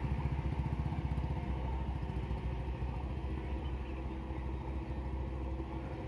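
Motorcycle engine running at low revs as the bike crawls through deep snow, fading a little as it pulls away.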